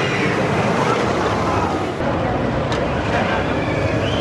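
Millennium Force steel roller coaster train rolling past along its track, a steady rushing rumble with faint riders' voices.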